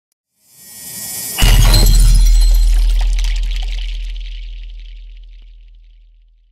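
Cinematic intro sound effect: a rising whoosh, then about a second and a half in a sudden deep boom with a glassy, shattering sparkle on top, fading out slowly over several seconds.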